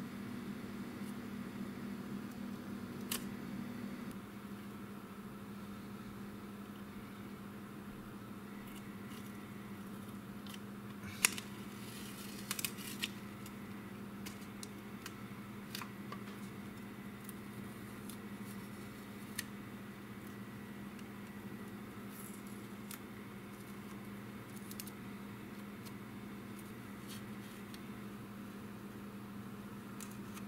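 Small clicks and taps of metal tweezers and fingers working masking tape and paper masks off a plastic scale-model airplane, the sharpest click about eleven seconds in with a few more just after, over a steady low hum that drops slightly a few seconds in.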